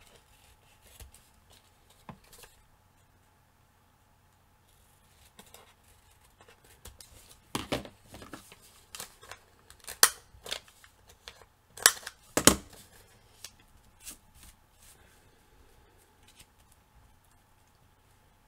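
Scissors snipping paper, then a handheld corner rounder punch snapping through paper corners: several sharp clicks in the middle, the loudest two close together about twelve seconds in.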